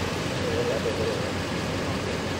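Emergency vehicles' engines idling, with steady street traffic noise.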